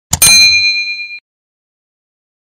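Notification-bell sound effect for a clicked subscribe bell. It is a sharp click-like attack and then a bright, high ding that rings for about a second before cutting off.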